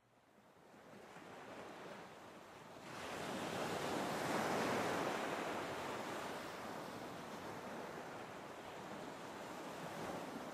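Ocean waves: a rush of surf that swells about three seconds in, peaks, and slowly ebbs away.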